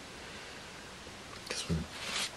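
Steady faint hiss of room tone, with a short soft vocal sound from a man's voice about one and a half seconds in.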